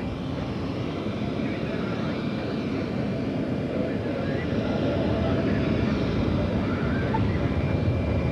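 Jet engines of Air Force One, a Boeing 707-based VC-137C, idling on the tarmac: a steady rumble with a faint high whine over it.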